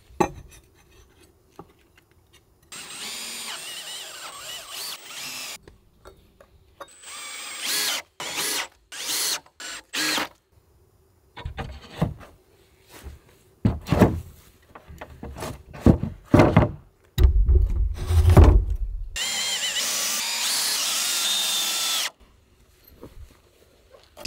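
Power drill driving screws into timber to fix metal joist hangers to the floor beams, in several separate runs of a few seconds each with pauses between. Heavy knocks of wood are heard between the drilling, loudest shortly before the last run.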